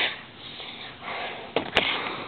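A short breathy sound close to the microphone, then near the end two sharp clicks of plastic Lego pieces as hands grab them.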